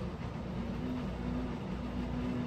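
Steady low background rumble with a faint hum.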